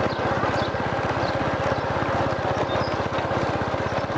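Small motorbike engine running steadily while riding, a rapid even low putter with road and wind noise over it.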